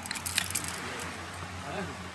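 Outdoor background noise with a steady low hum, a few light metallic clicks in the first second, and faint distant voices near the end.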